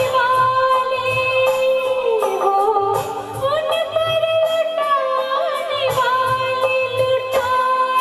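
A female vocalist sings a Hindi film song live with a band, holding long notes over keyboard and a steady drum beat.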